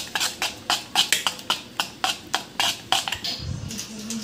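Metal spoon stirring thick gram-flour (besan) dhokla batter in a metal pot, clinking against the pot's side about four times a second.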